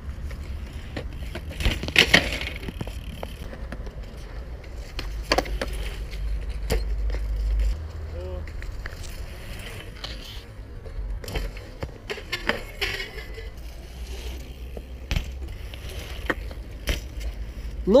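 BMX bike riding a concrete skatepark bowl: tyres rolling on concrete, with scattered sharp clacks and knocks from the bike and its landings, the loudest about two seconds in, over a steady low rumble.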